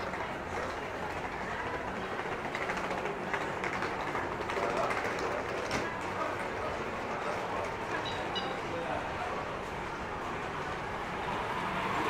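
Outdoor street ambience of a pedestrian shopping lane: indistinct chatter of passers-by over a steady background hum.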